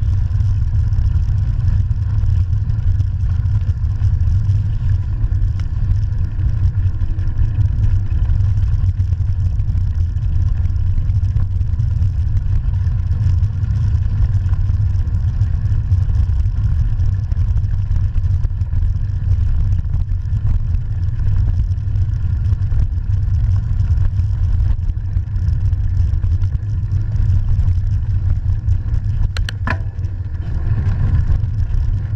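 Steady low rumble of wind buffeting the microphone of a bike-mounted camera, together with knobby mountain-bike tyres rolling fast over gravel. There is a short, sharper sound just before the end.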